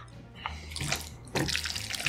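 Chopsticks working through sticky black-bean-sauce noodles, making wet squelching and clicking sounds that grow busier in the second half.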